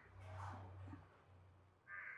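Near silence: a faint steady low hum, with one brief faint sound in the first second.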